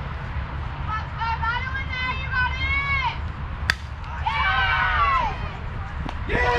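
High-pitched young voices calling and chanting, then a single sharp crack of a softball bat meeting the pitch a little past halfway, followed at once by a burst of excited yelling.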